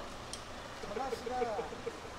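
An indistinct voice talking for about a second in the middle, over steady background noise, with a few faint clicks.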